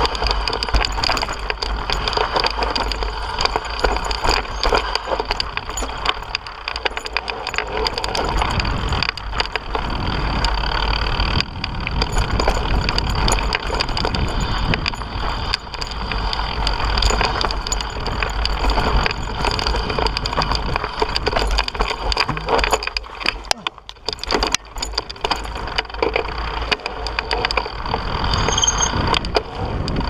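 Mountain bike ridden over a rough, rocky dirt trail, heard from a camera mounted on the rider: wind buffeting the microphone with a steady rumble, and tyres on dirt and rock with a constant rapid rattle and clatter of the bike over the stones. The noise eases briefly a little after two-thirds of the way through.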